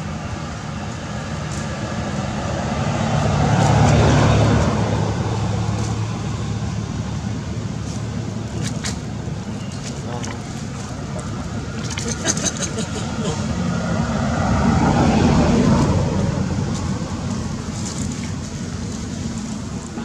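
Road traffic: two motor vehicles pass one after the other, each swelling to a peak and fading, about four seconds in and again about fifteen seconds in, with a few sharp clicks between them.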